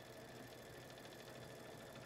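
Faint, steady running of a Baby Lock Solaris embroidery machine stitching.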